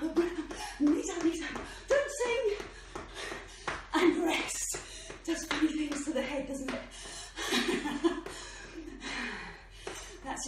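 A woman's breathless voice, laughing and panting between broken words after a high-knees interval, with sharp footfalls slapping on a tiled floor.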